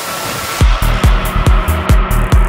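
Psytrance music: a hissing noise-wash break gives way, about half a second in, to the kick drum and rolling bassline coming back in at a steady pulse of a little over two beats a second.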